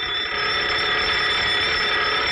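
A burglar alarm ringing, loud, steady and high-pitched, without a break.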